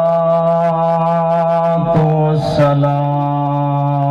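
A man's voice chanting in long held notes, each kept on one steady pitch. There is a short break about two seconds in before the next long note begins.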